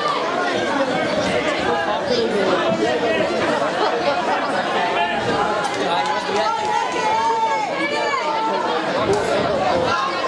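Crowd of spectators chattering and calling out, many voices overlapping at a steady level.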